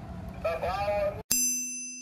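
A single bright chime struck a little over a second in, after a sudden cut, ringing on as one low tone with several high tones above it and slowly fading: the logo sting of the end card. Before it, a short stretch of speech over hiss.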